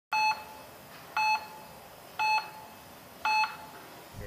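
Electronic heart-monitor-style beeps: one short, pitched beep about every second, four in all.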